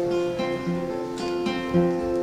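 Acoustic guitar played alone between sung lines, chords picked in a steady pattern with a new note roughly every half second.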